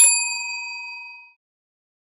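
Sound effect of a notification bell clicked in a subscribe-button animation: a single ding, struck once and ringing out, fading away within about a second and a half.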